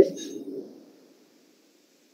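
The tail end of a voice heard over a video-call line, with faint line noise fading out within the first second, then near silence.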